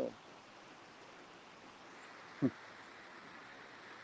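Faint steady outdoor background noise, with one brief vocal sound falling in pitch about two and a half seconds in.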